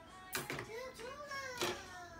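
A young child's high-pitched voice: a drawn-out utterance that rises and then falls in pitch, with a hissing consonant at its start and near its end.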